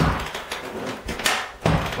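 Kneeless carpet stretcher being pumped by its lever arm, the metal mechanism giving three sharp clunks: one at the start, two close together near the end.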